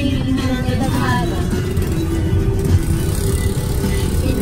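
Steady low rumble of an open-sided tour vehicle in motion, with wind on the microphone, under music and voices.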